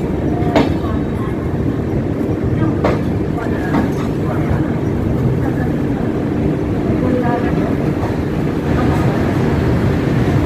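LHB passenger coach rolling slowly along a station platform: a steady low rumble of wheels on rail, with a couple of sharp clacks in the first three seconds.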